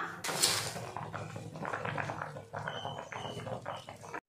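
Mutton gravy boiling in a steel kadai: a short hiss at the start, then irregular bubbling pops and gurgles that slowly get quieter.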